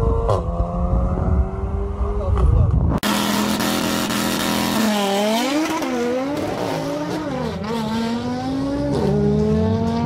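A Volkswagen Golf hatchback's engine running with wind noise as it is filmed from a car alongside. About three seconds in, a sudden change to a car launching on a drag strip: the revs are held, then waver up and down as it pulls off, then climb steadily, with a gear change near the end.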